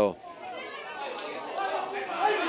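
Background voices talking and calling out, indistinct and fainter than the commentary.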